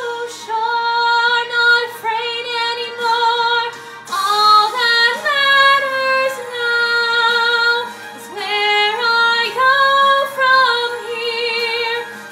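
A woman singing solo in musical-theatre style, holding long notes with vibrato. Her phrases break briefly about four and eight seconds in.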